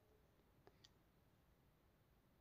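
Near silence: room tone, with two very faint ticks a little under a second in.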